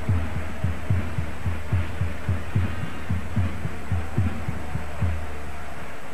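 A low drum beaten steadily in the stadium crowd, about three and a half beats a second, over a steady low hum and crowd noise. The drumming stops about five seconds in.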